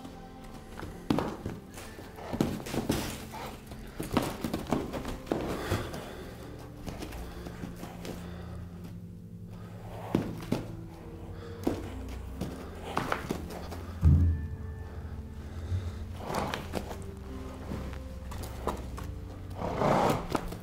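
Background music, with repeated dull thuds from a hobbled Arab mare's hooves hopping and pawing in arena sand as she fights her hobbles for the first time; the heaviest thud comes about two thirds of the way through.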